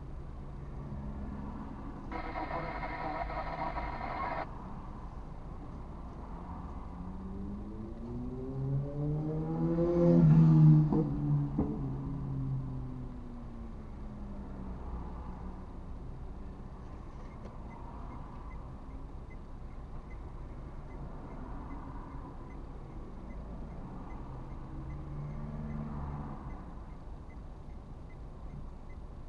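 Street traffic heard from inside a car stopped in a queue: a steady low rumble of idling engines throughout, and a steady buzzing tone lasting about two seconds near the start. A passing vehicle's engine rises and then falls in pitch and is loudest about ten seconds in.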